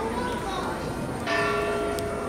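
Church bell ringing, struck again about a second and a half in, its tones hanging on, with voices of people in the square underneath.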